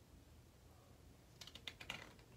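Near silence, then a few faint quick clicks and ticks of a hardcover picture book being handled in the hands, starting about one and a half seconds in.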